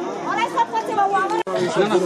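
Several people talking at once, voices overlapping like crowd chatter. The sound drops out for an instant about two-thirds of the way through.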